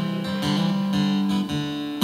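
Gibson Southern Jumbo steel-string acoustic guitar strummed softly, its chords ringing on and changing a couple of times.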